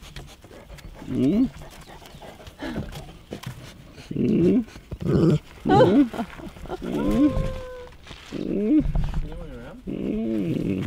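Two friendly dogs being petted, making short whining calls that rise and fall, one of them held as a steady note for about a second, mixed with a person's voice talking to them.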